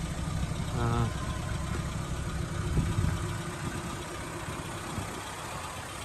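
1995 Suzuki Jimny Sierra's 1.3-litre eight-valve engine idling steadily, with a brief voice about a second in.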